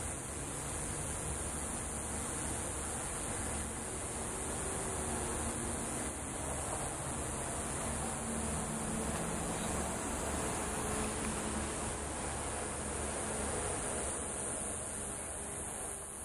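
Steady high-pitched insect chorus with a low, steady rumble underneath.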